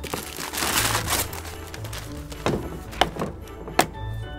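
Gift-wrapping paper torn and crumpled off a hard plastic carrying case. Then a few sharp knocks and clicks as the case is laid down on a plastic truck bed liner and its latches are worked, over background music.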